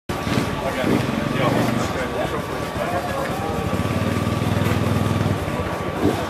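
Off-road enduro motorcycle engine running at a steady idle, with people talking around it.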